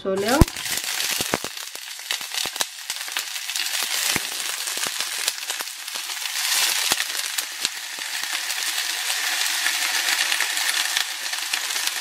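Green beans sizzling and crackling in hot olive oil in a ceramic-coated frying pan, with a sharp knock about half a second in as the first beans go in, then a dense patter of small pops as more beans are tipped in from a colander.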